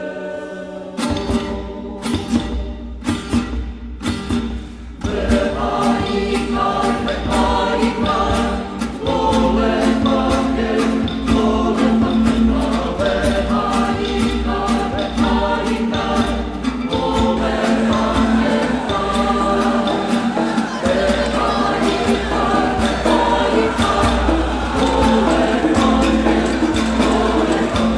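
Choral music: a group of voices singing together over a steady beat, the singing fuller from about five seconds in.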